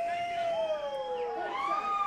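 Several audience members whooping, long overlapping cries that glide up and down in pitch.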